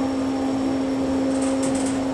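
Steady hum inside a Kone EcoDisc elevator cab as it travels down, with one constant low tone running through it. A few faint high clicks come near the end.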